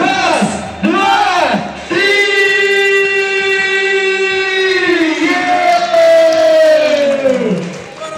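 A man's voice over a microphone shouts a long, drawn-out call held on one pitch for about three seconds. A second call then slides steadily down in pitch and ends just before the close.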